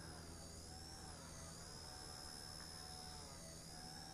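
Blade Nano S2 micro electric RC helicopter pirouetting in a hover: a faint high-pitched motor and rotor whine that slowly wavers up and down in pitch as it spins on the rudder alone, held in place by its pirouette compensation.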